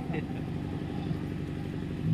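A steady low mechanical rumble, like an engine idling, in the background of an open-air recording.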